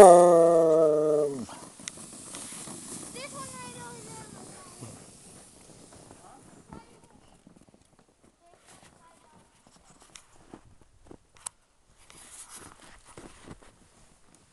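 A person laughs loudly for about a second. A short, high, wavering call follows about three seconds in, and after that only faint scattered crunches and taps of feet and paws in snow.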